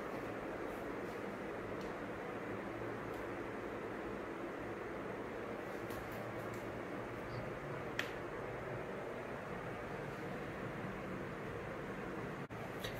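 Steady room noise, a low even hiss and hum, with one brief click about eight seconds in.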